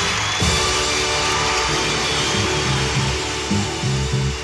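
Orchestral music playing the closing bars of the song: loud held chords over a moving bass line, with no singing.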